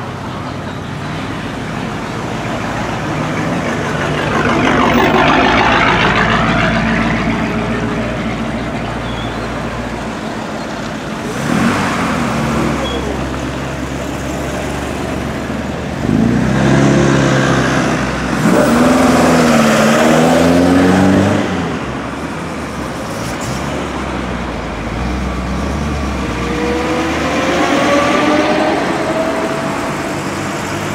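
Classic cars driving slowly past one after another, among them a C3 Corvette V8, each engine note swelling and fading as it goes by. Near the end an engine revs up, its pitch rising.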